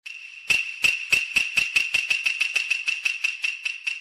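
A sound-effect build for an edited promo: a steady high-pitched ringing tone under a run of sharp knocks. The knocks start about half a second in and come faster and faster.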